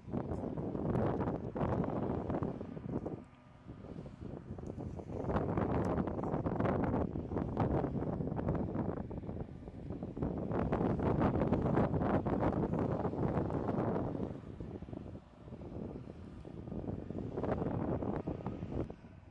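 Wind buffeting the microphone in gusts, dropping away about three seconds in and again near fifteen seconds, over the running of an aircraft tow tractor pulling the drone along the ramp.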